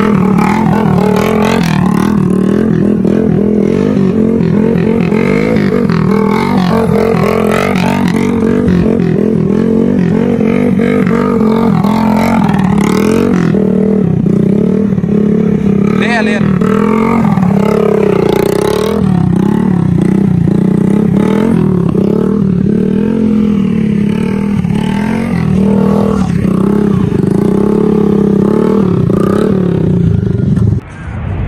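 Small motorcycle engine running and revving continuously while the rider holds a wheelie, its pitch wavering with the throttle. Voices are mixed in.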